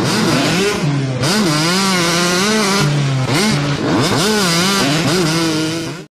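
An engine revving in repeated throttle blips, its pitch holding briefly and then sweeping up and down. It cuts off abruptly at the end.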